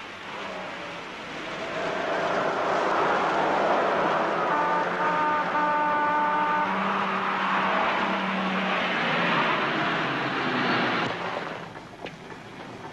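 A car's engine running, its noise building over the first couple of seconds, holding, and dropping away near the end. A couple of brief steady tones sound about halfway through.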